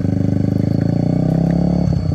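Yamaha sport motorcycle pulling away in first gear with a steady exhaust note whose pitch rises slowly as it gains revs. The rider is new to clutch bikes and is still holding first gear.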